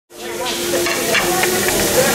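Buffet-line background noise: a steady hiss with a few short clinks of serving utensils and faint voices, fading in at the start.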